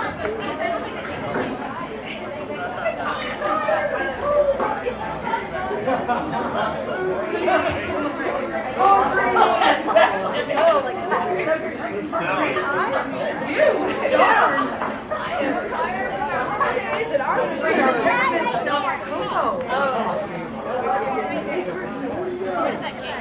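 Many voices chattering at once, overlapping so that no single speaker stands out, with a few louder calls around the middle.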